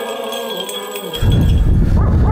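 Church choir singing held notes while the small bells of a swung censer jingle. About a second in, this cuts off abruptly to a loud low rumble of wind on the microphone.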